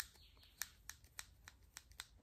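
Faint ticks, about three a second, from a makeup brush being swirled in circles against the palm of a hand loaded with liquid foundation; otherwise near silence.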